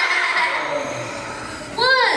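Voices in a large hall: a low murmur of voices, then one short high-pitched cry that rises and falls near the end.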